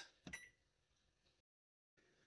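Near silence: faint room tone with one brief faint sound just after the start, then dead silence at an edit before the end.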